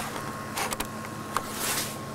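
Camcorder handling noise: a few light knocks and a brief rustle as the camera is moved and brushed against, over a steady electrical hum.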